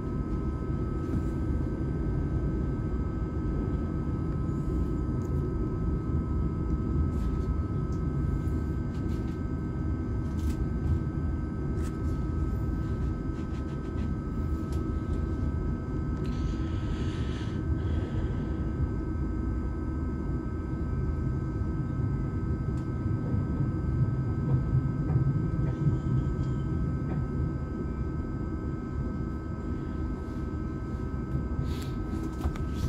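Inside a moving ÖBB Cityjet double-deck passenger coach: the steady low rumble of the train running along the track, with faint steady whining tones and scattered light clicks. A brief hiss about halfway through.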